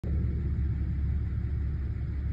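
A steady low rumble with no clear pitch.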